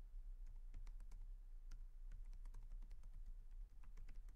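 Faint typing on a computer keyboard: a run of quick, irregular keystrokes.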